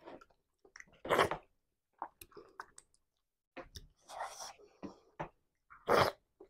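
Close-miked chewing and mouth sounds of a person eating amala, a soft yam-flour swallow, with tomato sauce by hand. The sounds come in short, uneven bursts, with a brief pause about three seconds in.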